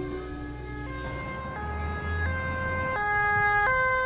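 Two-tone siren alternating between a higher and a lower note about every two-thirds of a second, getting louder toward the end.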